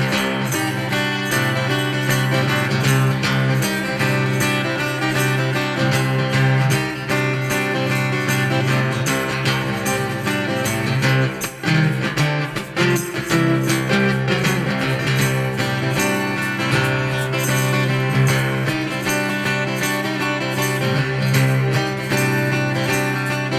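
Solo steel-string acoustic guitar played fingerstyle in an open tuning with a slide, a steady low bass note droning under picked melody notes. The playing thins out briefly about eleven to twelve seconds in.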